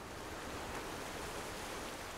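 A soft, steady rushing noise with no tune or pitch, faded in just before: an ambient intro sound laid in ahead of the song's music.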